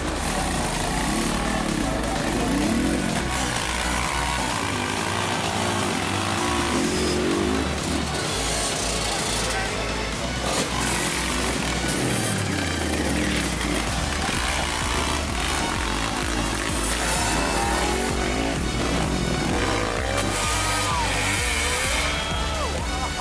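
Dirt bike engines revving hard and rising and falling in pitch as the bikes claw up a steep dirt climb, mixed with background music that has a steady bass line and with people's voices.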